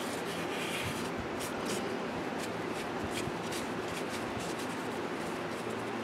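Folded paper towel rubbing and dabbing over a varnished wooden carving, wiping off the excess varnish: a quiet, steady scratchy rubbing with small ticks, over a faint low hum.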